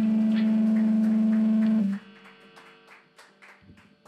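An amplified electric instrument holds one steady, hum-like low note through the amps at the end of a rock song. It cuts off abruptly about two seconds in, leaving faint scattered clicks and knocks.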